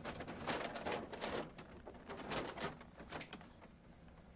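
Rustling handling noises: a run of short, irregular scrapes and crinkles, several a second, fading slightly toward the end.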